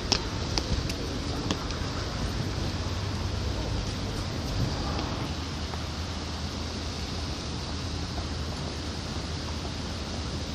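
Steady outdoor background noise with a low rumble, broken by a few sharp clicks in the first second and a half.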